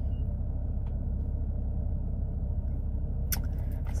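Steady low rumble of a stationary car's idling engine, heard from inside the cabin. A few sharp clicks and rustles near the end as a quilted leather handbag with a gold chain strap is lifted.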